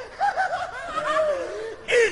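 A single high-pitched voice snickering in a quick run of short bursts, then a longer wavering vocal sound.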